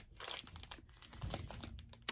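Faint crinkling and crackling of a small clear plastic bag being handled, with a soft low bump about a second in.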